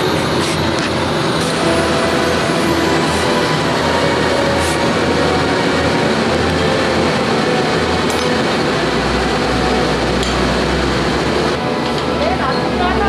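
Steady machinery noise of a garment factory floor, with a few sharp clicks and knocks scattered through it; a deeper rumble joins near the end.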